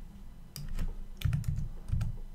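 Computer keyboard keystrokes as a short word is typed: a handful of irregular key clicks starting about half a second in, some with a dull thud.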